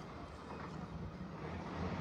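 Faint outdoor background noise with a low rumble that grows slightly toward the end.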